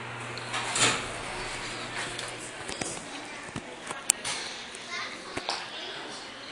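Thyssenkrupp hydraulic elevator arriving: a steady low hum stops about a second in with a short rush of noise. Then come scattered clicks and knocks, one sharp click near the middle, while children's voices carry in the background.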